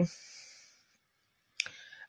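A soft breath out trailing off at the end of a word, a second of quiet, then a single sharp mouth click near the end as the lips part to speak again.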